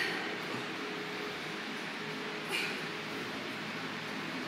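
Steady room hum with two short breathy bursts, one at the start and one about two and a half seconds in: forceful exhalations with each alternating dumbbell snatch.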